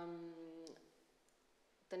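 A woman's voice holding one long, flat hesitation vowel ("ehh") for about the first second, then a pause near silence before her speech resumes at the very end.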